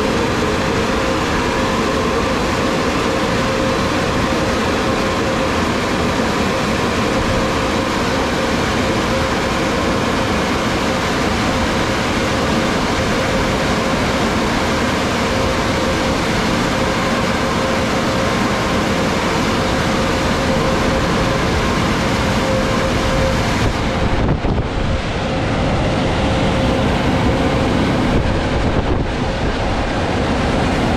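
Car wash dryer blowers running: a loud, steady rush of air with a constant whine. Near the end the sound briefly dips and thins, twice.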